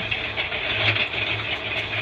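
A motor running steadily: a low hum with a hiss over it.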